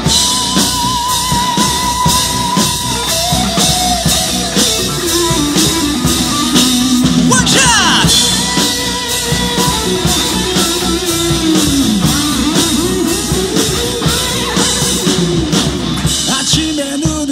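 Live rock band playing: drum kit keeping a steady beat under electric guitar, with a melodic lead line that slides and bends in pitch.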